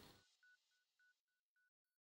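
Near silence: the end of the background music fades out within the first quarter second.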